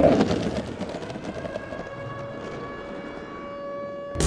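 Trailer sound design: a swelling hit, then a sustained rumbling drone with several steady high tones ringing over it, cut off abruptly at the end.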